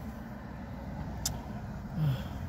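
Steady low hum inside a parked car's cabin, with one faint click a little past halfway.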